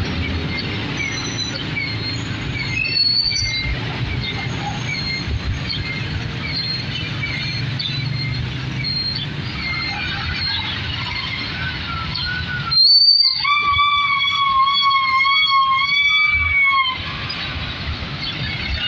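Street traffic with vehicle engines running, with short high chirps scattered through it. About thirteen seconds in, a loud, high, slightly wavering squeal from a vehicle starts suddenly and cuts off after about four seconds.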